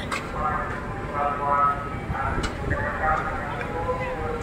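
Background voices of people talking on a busy quayside over a low rumble of harbour noise, with a couple of brief sharp clicks.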